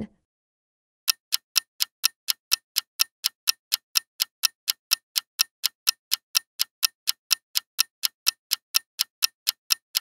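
Clock-ticking sound effect for a quiz countdown timer: sharp, even ticks at about four a second, starting about a second in after a short silence, marking the time left to answer.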